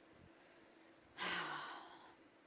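A woman's short breathy sigh close to a handheld microphone, about a second in, with a faint voiced tone that falls slightly in pitch.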